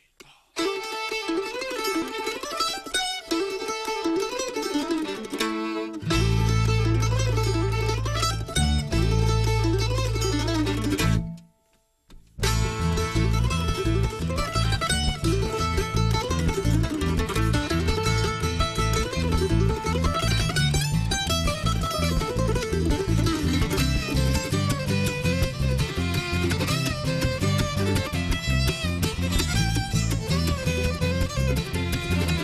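Acoustic string-band instrumental on fiddle, mandolin and acoustic guitar. It opens with a lone plucked line, deep low notes join about six seconds in, and the band stops dead for about a second near the middle before the full band plays on.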